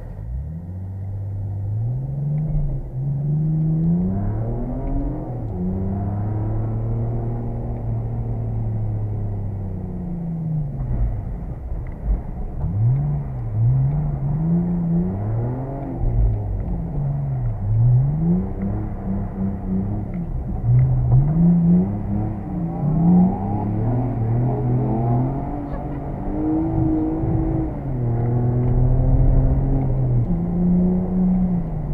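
BMW E46 330's straight-six engine heard from inside the cabin, revving up and down over and over as the car is drifted. The pitch climbs and falls every second or two, with short dips as the throttle is lifted.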